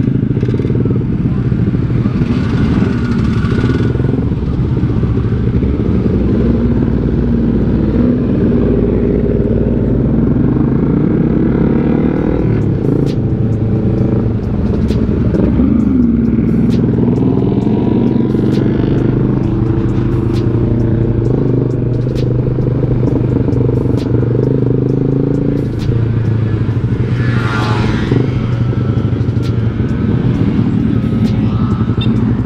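Motorcycle engine running while riding in traffic, its pitch rising and falling with the throttle, with scattered clicks and rattles and a brief higher-pitched sound near the end.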